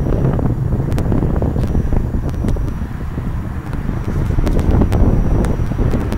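Wind buffeting the tablet's built-in microphone, a loud, steady low rumble that dips briefly about three seconds in, with a few scattered clicks.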